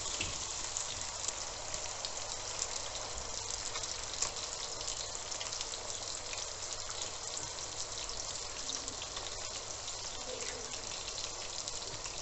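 Diced chicken frying in oil in a wok over medium-high heat: a steady sizzle with fine crackling, as eggs are cracked into the pan.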